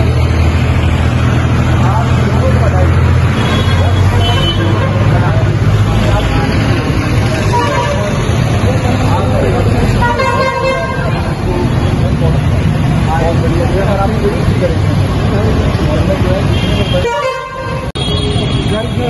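Busy roadside traffic noise: an engine idling with a steady low hum, vehicle horns honking, and indistinct voices of people standing around.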